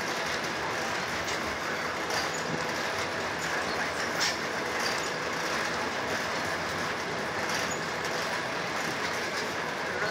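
Freight train of open-top hopper cars rolling past at steady speed: a continuous rumble of steel wheels on rail, with a few faint clicks from the wheels passing over the rail.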